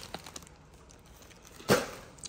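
Plastic courier mailer bag being handled: a few faint crinkles, then one short, louder rustle near the end as the parcel is put down.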